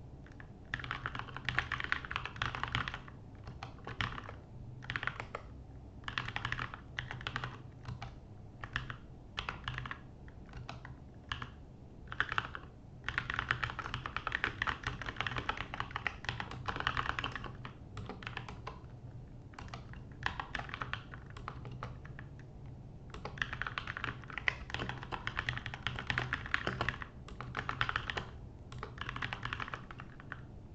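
Typing on a computer keyboard: runs of rapid keystrokes broken by short pauses, as code is written.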